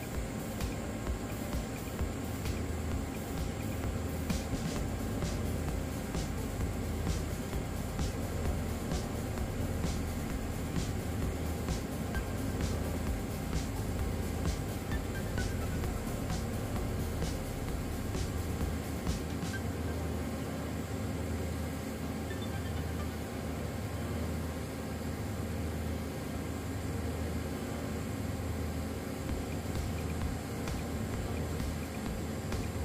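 Background music with a steady beat of about two sharp ticks a second that drops out about two-thirds of the way through, over a steady low hum.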